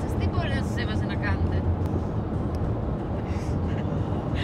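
Steady low rumble of road and engine noise inside a moving car's cabin, with a woman's voice briefly at the start.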